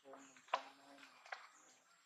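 Faint voices of people talking in the background, with two short sharp clicks.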